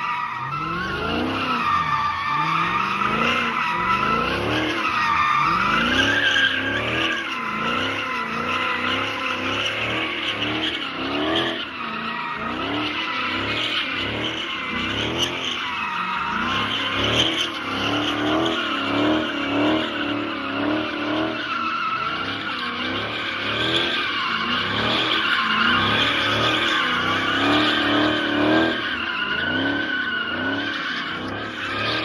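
Dodge Challenger doing donuts: the tyres squeal without a break while the engine's revs rise and fall over and over.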